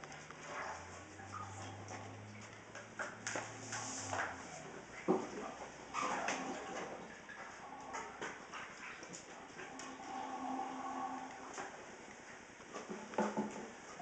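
Scattered light knocks and clicks from handling the gravel cleaner and gravel in the emptied aquarium, with a low hum for a few seconds near the start.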